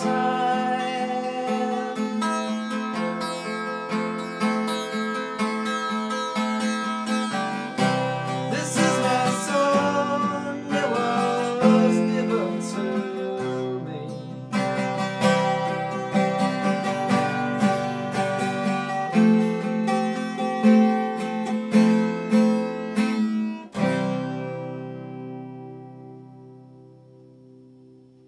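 Acoustic guitar playing the closing bars of a song in strummed chords. It ends on a final chord about two seconds before the end, which rings out and fades.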